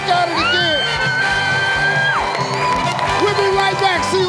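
Game-show music with a steady beat over a cheering studio audience. A long, high-pitched whoop rises and holds for about two seconds near the start.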